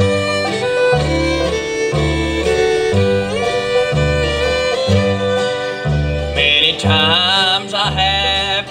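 Bluegrass band playing live: a fiddle leads an instrumental break over banjo, acoustic guitar and an upright bass plucking on the beat about once a second. Near the end a louder, wavering melody line comes in on top.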